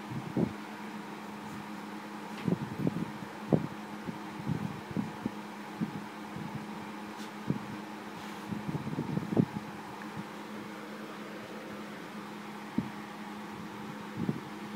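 Steady low mechanical hum, with irregular soft bumps and rubbing from a handheld phone microphone being jostled while a ball python is held.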